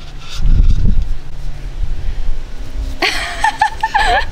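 A short low rumble about half a second in, then a person giggling in short, high bursts for the last second.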